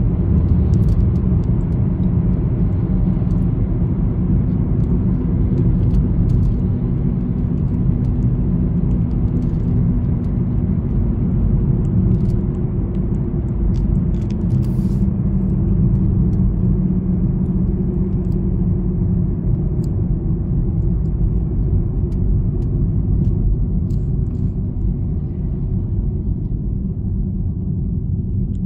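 Steady engine hum and tyre rumble heard from inside the cabin of a moving car.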